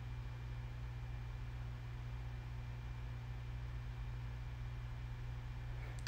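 Steady low hum with a faint hiss, the room's background noise, with no distinct event.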